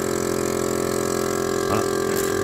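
Electric vacuum pump of an Enolmatic bottle filler running steadily with a constant tone, holding the vacuum that draws wine into the bottle.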